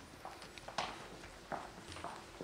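Footsteps of several people walking across a hard stage floor: a handful of separate, irregular steps.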